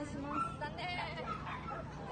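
A small dog barking, with voices in the background.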